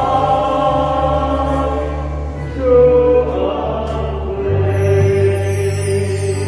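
Hymn sung by male voices through the church's microphones over an instrumental accompaniment of held bass notes, with the bass changing note about four and a half seconds in.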